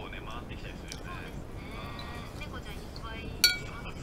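A metal spoon clinks once against a ceramic plate about three and a half seconds in, with a short ringing after it, as curry soup is scooped from the plate. Faint voice-like sounds run underneath.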